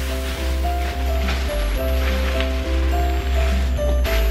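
Background music with a steady, strong bass and held notes that change every half second or so.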